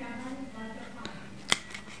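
A stiff cardboard board-book page flipped open, giving one sharp click about one and a half seconds in.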